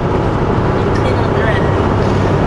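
Steady engine and road noise inside a semi-truck's cab while cruising on the highway, with a constant low rumble.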